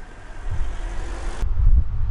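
Low rumble of road traffic on the street with wind buffeting the microphone, swelling about halfway through.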